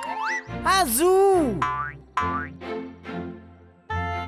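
Cartoon sound effects over light children's music: a loud pitched sound that swoops down and back up about a second in, followed by several short sweeps rising in pitch.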